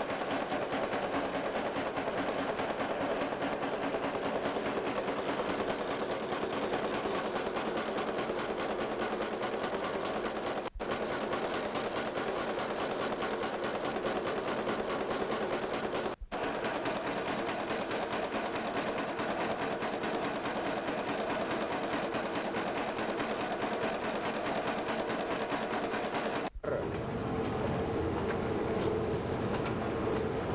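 Wire nail making machine running, a continuous fast mechanical clatter of rapidly repeating strokes. It cuts out briefly three times, and near the end the sound changes, with a steady hum coming in under the clatter.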